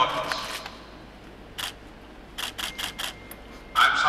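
Still-camera shutters clicking: a single click about a second and a half in, then a quick run of five or six clicks.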